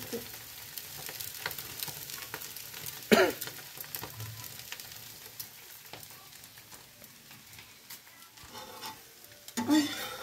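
Egg dosa sizzling and crackling on a hot tawa, with a flat metal spatula scraping the pan as it is worked under the dosa. About three seconds in comes one short, louder sound that glides down in pitch.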